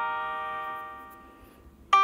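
Sampled piano notes from a touchscreen piano app. The notes struck just before ring on and slowly fade away almost to silence, then a new note is struck just before the end.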